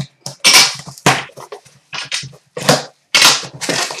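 Cardboard shipping case being torn open by hand: the top seam and flaps ripping and crunching in four or five loud, sharp bursts.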